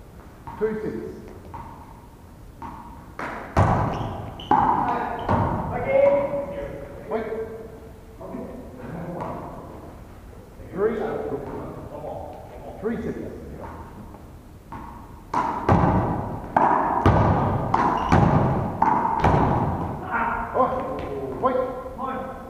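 One-wall handball rally: a small rubber ball struck by hand and slapping off the front wall and wooden floor in an irregular run of sharp thuds, each ringing on in the echo of a large hall.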